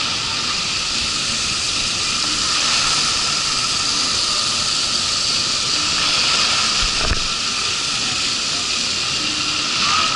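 Steady rushing of water and hiss as an inflatable tube slides across the wet wall of a water slide, with one brief knock about seven seconds in.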